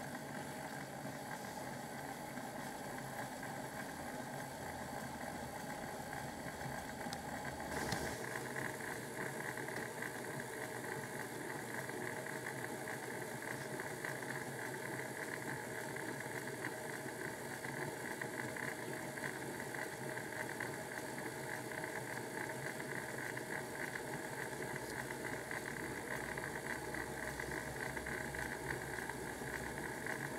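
Bachmann OO gauge Class 4575 Prairie tank model's motor and gear drive whirring steadily as the locomotive runs on rolling-road rollers. About eight seconds in there is a click, and the whirr then grows a little louder and brighter.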